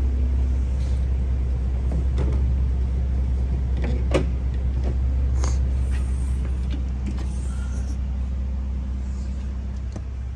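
An SUV's power liftgate unlatching with a sharp click about four seconds in and swinging open, with a few lighter clicks around it, over a steady low rumble.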